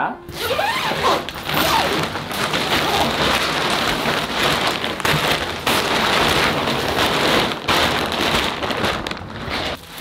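Plastic shipping bag rustling and crinkling loudly, with many quick crackles, as it is torn open and pulled off a bean bag.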